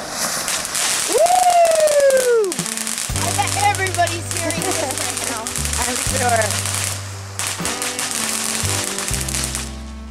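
Ground firework fountain hissing and crackling hard, its sparks popping many times a second, then dying away near the end. A voice calls out in one long falling note about a second in, and music with a steady bass line plays from about three seconds in.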